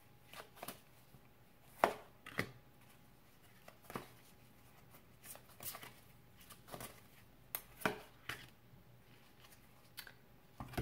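Tarot cards being shuffled and pulled from the deck by hand: a dozen or so scattered soft snaps and taps at an irregular pace, the loudest about two seconds in.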